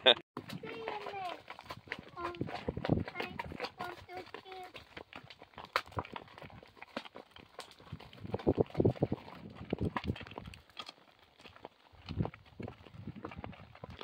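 Horses walking on a gravelly dirt road, their hooves striking the ground in irregular steps, with voices and laughter in the background.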